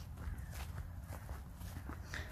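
Footsteps on a dirt path, about two steps a second, over a low steady rumble.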